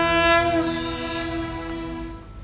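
A sustained synthesized chord, a TV graphics sting, held steady and then slowly fading, with a bright high shimmer joining about half a second in.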